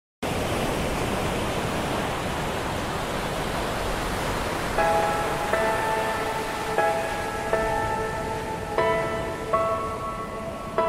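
Instrumental intro of a Christian pop song: a steady wash of noise like soft static, joined about five seconds in by sustained chords that change roughly once a second, with no singing yet.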